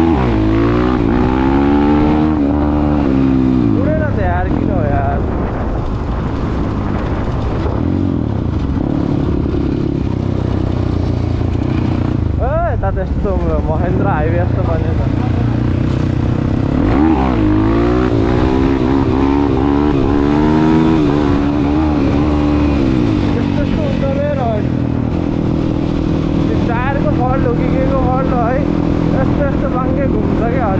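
Dirt bike engine running under way, the revs climbing in rising sweeps through the gears and settling back between them, heard close from the rider's own bike.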